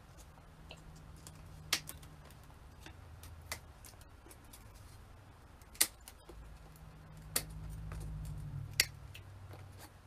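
Small hand cutters snipping at a craft ornament: five sharp, separate clicks spread a second or two apart, between softer handling rustles. A low hum comes up under the last few snips.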